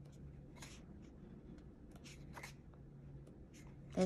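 Paper pages of a softcover coloring book being turned by hand: a few soft, faint rustles as the sheets slide and flip.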